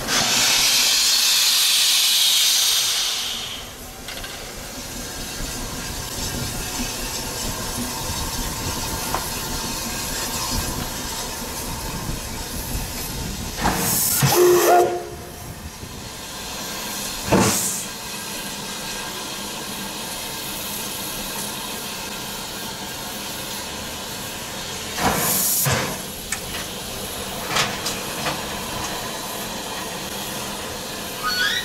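Steam locomotive venting steam: a loud hiss for about three and a half seconds, then a lower steady background broken by a few short bursts of hiss.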